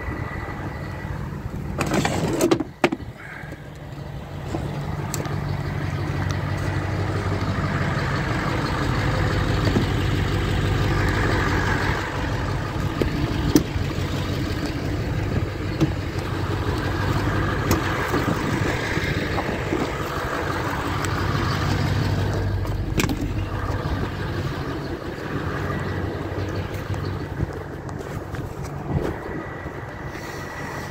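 A motor vehicle's engine running with a steady low hum, growing louder over the first several seconds and then holding. A loud clatter comes about two seconds in.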